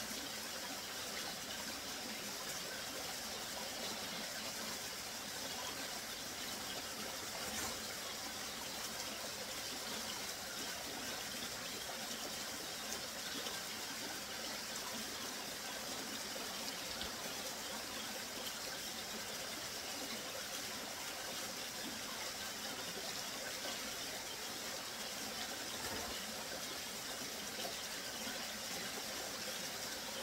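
Small mountain stream running steadily over rocks, a continuous rushing of water.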